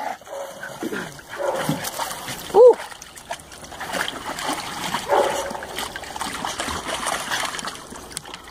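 Dogs wading and splashing in a plastic kiddie pool, water sloshing, with a few short dog whimpers; the loudest is a brief high whine about two and a half seconds in.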